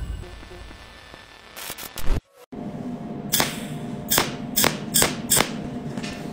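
The tail of a logo sting fades out and cuts to a brief silence. Then a micro arc welder fires sharp snapping cracks, five of them in about two seconds, over a steady electrical hum as it tack-welds wire ends with filler rod.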